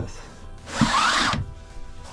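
Dual-pane acrylic camper-trailer window pulled shut and latched: a scraping rub of under a second with a rising squeak, and a knock as it closes.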